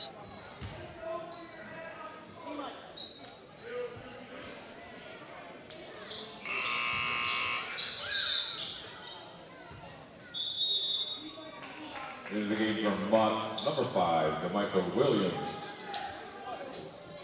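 Gymnasium scoreboard buzzer sounding once, a steady electric blare lasting a little over a second, echoing in the hall during a stoppage in play. A brief high tone follows about four seconds later, and voices carry through the gym near the end.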